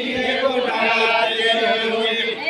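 A group of voices chanting a deuda folk song together in long, drawn-out notes.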